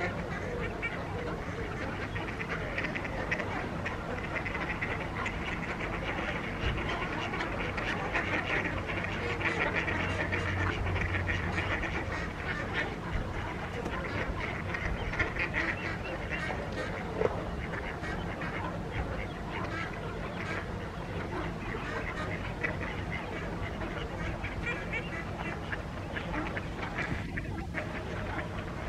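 A flock of mallards quacking and calling together in a steady, continuous chorus.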